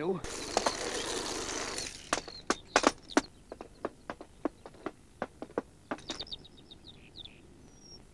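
A rustling rush for about two seconds, then a run of sharp clacks from roller skates knocking on stone, with birds chirping near the end.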